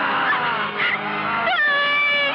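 A wounded man's anguished screams of pain, with a woman crying out beside him. A long, held cry begins about one and a half seconds in.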